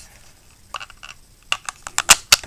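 Light clicks and taps of plastic GoPro mount parts being handled and fitted together: a couple just under a second in, then several sharper ones in the last half-second.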